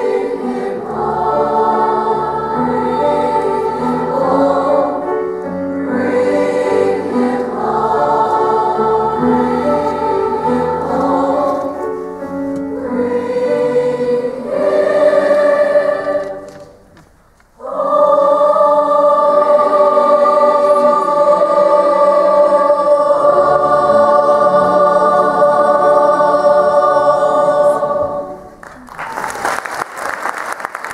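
Large mixed youth choir singing with piano: several phrases, a short break about seventeen seconds in, then a long held final chord that is cut off near the end. Applause starts right after the cutoff.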